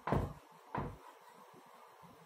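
Chalk writing on a chalkboard: two short knocking strokes of the chalk against the board in the first second.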